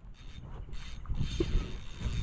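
Fishing reel working mechanically just after a tarpon takes the bait, over a low rumble that grows about a second in.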